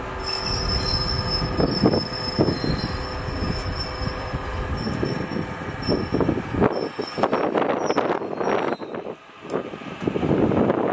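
JR East 209 series electric-multiple-unit cars being hauled slowly along yard track, their steel wheels giving a high, steady squeal over a low rolling rumble. The squeal fades out about eight seconds in, leaving the clatter of wheels.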